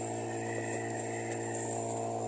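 Small 8 hp outboard motor running at a steady speed, pushing a sailboat along at about four knots: an even, unchanging drone.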